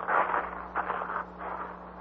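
Footsteps crunching and scraping over stones in uneven bursts, a radio-drama sound effect of walking on a rocky shore.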